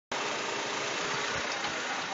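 Honda City's four-cylinder engine idling steadily, heard from over the open engine bay.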